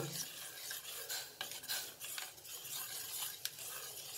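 Steel spoon stirring a thick simmering jaggery, almond and date mixture in a stainless steel pot, scraping and clinking irregularly against the metal, over a faint sizzle.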